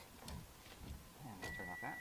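Faint handling noise and light clicks, then a man's voice near the end with a steady high-pitched tone alongside it.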